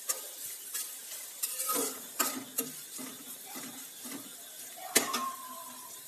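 Steel ladle scraping and clinking against an aluminium kadai as onions and green chillies are stirred, over a faint sizzle of frying. About five seconds in, a sharp clink as the ladle is set down against the pan, which rings briefly.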